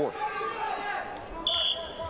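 Background hum of an arena crowd, then a short, steady whistle blast from the referee about one and a half seconds in.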